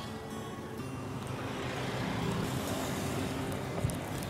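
Road traffic noise that swells about a second in, as of a car passing, under soft background music with held notes; a short knock just before the end.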